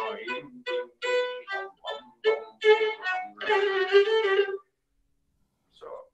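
Solo violin playing a short, lively folk-style theme in quick, separated notes, stopping about four and a half seconds in. Heard over a video call.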